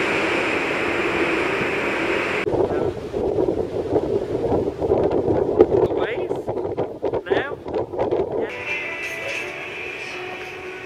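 Wind buffeting the microphone on a cruise ship's open deck, a gusty noise over the sea's rush. About a second and a half before the end it gives way to background music.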